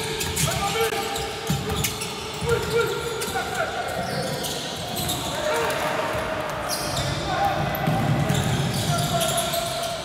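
A basketball being dribbled on a hardwood court during play, with voices calling out in a sports hall.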